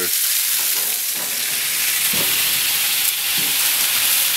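Chicken breasts and sliced vegetables sizzling on a hot barbecue hotplate: a steady frying hiss.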